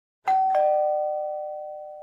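Two-tone ding-dong doorbell chime announcing a visitor at the door: a higher note, then a lower note a quarter second later, both ringing on and fading slowly.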